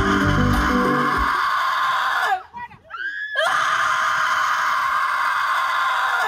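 Several voices screaming together in two long, sustained screams with a short break between them; the first falls away in pitch as it breaks off. Bass-heavy backing music cuts out about a second in.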